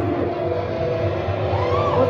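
A live band playing loud in a small basement: a dense distorted wash from the bass and amplifiers over a steady low hum, with a voice rising and falling briefly near the end.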